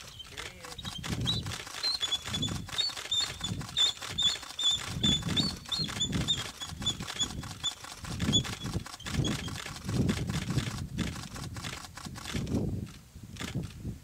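Bald eagles calling during mating: a fast chatter of thin, high piping notes that stops about nine and a half seconds in. Under the calls are irregular low rumbles and repeated short clicks.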